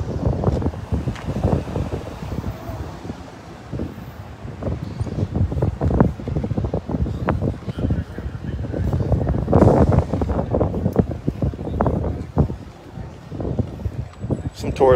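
Wind buffeting a phone's microphone in uneven gusts, a low rumble that swells and drops, loudest about two-thirds of the way through.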